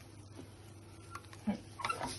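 A few faint light clicks of a wooden spatula against a pan of roasting makhana and nuts, over a low steady background.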